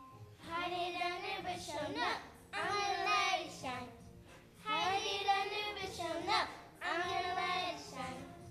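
Young girls singing, in four long sung phrases with short breaths between them.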